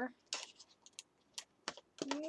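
Faint, scattered light clicks and taps, about six in two seconds, from craft supplies being picked up and handled on a cutting mat: an ink pad and a sponge dauber being got out for inking card edges.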